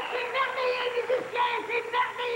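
Male and female voices singing together into microphones with musical accompaniment, holding notes and moving from note to note.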